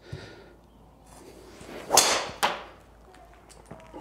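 Golf driver swung at full speed: a short whoosh builds into the sharp crack of the clubhead striking a teed ball about two seconds in, a solidly struck drive. A second, shorter knock follows about half a second later.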